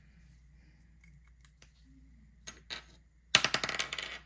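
A small plastic die rolled onto a wooden tabletop: a couple of soft clicks, then a quick clattering run of sharp clicks lasting under a second near the end.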